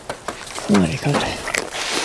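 A short voice about halfway through, falling in pitch, over light clicks and crackling.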